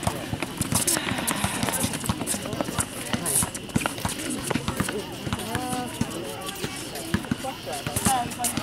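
Voices of spectators and players talking on and around a basketball court, mixed with frequent short knocks from running footsteps and a bouncing basketball on the outdoor court surface.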